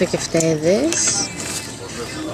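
A short vocal sound, then table noise with light clinks of plates and cutlery.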